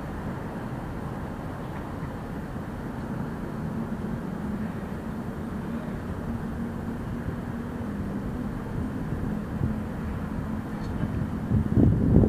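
City street ambience: a steady rumble of traffic with a low, steady hum underneath, growing louder in the last second.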